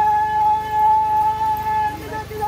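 A single high note held steady, without wavering, for about two seconds, part of the music for the traditional Acholi Bwola dance; it breaks off near the end.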